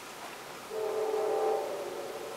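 A steady, horn-like chord of several pitches held together, starting under a second in and fading away near the end.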